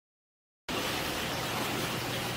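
Dead silence for a moment, then a steady rushing water noise starts suddenly, from water circulating through large stingray aquarium tanks.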